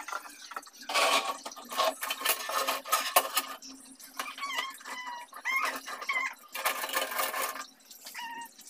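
Metal parts of a stainless-steel kerosene wick stove clinking, knocking and scraping as the burner and pot stand are handled and set back in place, in irregular bursts of clatter.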